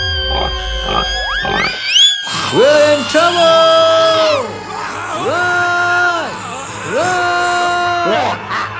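A cartoon pig squealing with rising shrieks for about two seconds, then three long held, voice-like wailing calls, over background music.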